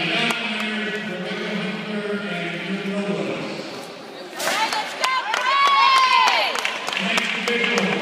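Voices in a school gymnasium: a steady, held voice-like tone for the first three seconds, then, a little past halfway, a burst of sharp clicks and high squeals that bend up and down, before voices return near the end.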